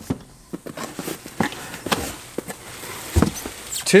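Cardboard shipping box and plastic bubble-wrap packaging being handled: irregular crinkles, rustles and small clicks, with a heavier thump a little after three seconds.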